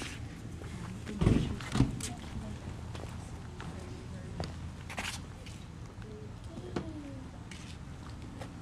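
Handheld camera being carried outdoors: two low thumps of handling or footsteps about a second in, then scattered light clicks over a steady outdoor background, with faint indistinct voices.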